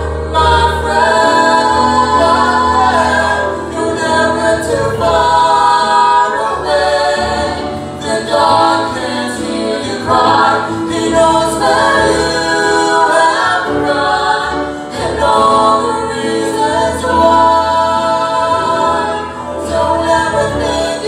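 A vocal trio of two women and a man singing a slow gospel song in harmony into handheld microphones.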